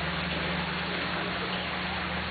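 Fountain water splashing in a steady rush, with a low steady hum underneath.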